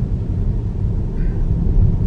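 Steady low road and tyre rumble inside the cabin of a moving Tesla electric car, with no engine sound.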